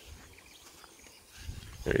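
Faint, quiet outdoor background with no distinct event, and a man's voice starting near the end.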